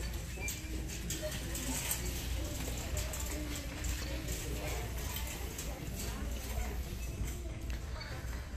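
Footsteps on a hard store floor, about two a second, over indistinct voices and music in a large store and a steady low hum.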